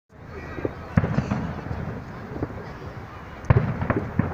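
Fireworks going off: a sharp bang about a second in and another near the end, with smaller pops and a low rumble between.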